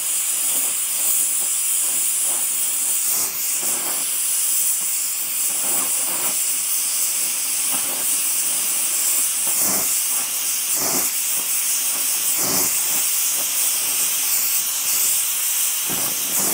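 Oxy-propane brazing torch flame hissing steadily on steel plate, with faint irregular crackles through it.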